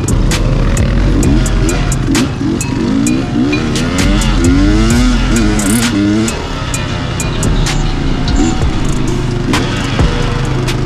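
Several dirt bike engines, among them the rider's own KTM 300 two-stroke, revving and shifting together as the group rides off, their pitches rising and falling over one another most strongly in the middle seconds, with frequent sharp clicks throughout.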